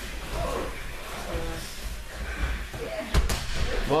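A judoka thrown onto the tatami mat: one heavy slap and thud of the body landing, a little over three seconds in.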